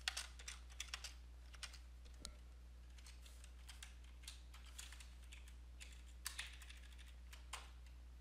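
Faint typing on a computer keyboard, irregular runs of keystrokes with short pauses, as code is entered, over a steady low hum.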